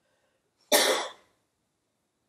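A single cough, starting sharply about three-quarters of a second in and dying away within half a second.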